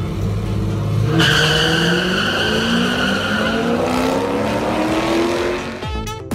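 A car launching down a drag strip: the engine holds steady revs, then about a second in it takes off with a sharp high tyre squeal and the revs climb in several steps as it shifts up through the gears.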